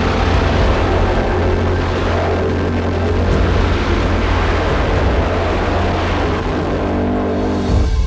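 Nitro dragster engines at full throttle during a run down the strip, loud and harsh, cutting off suddenly near the end.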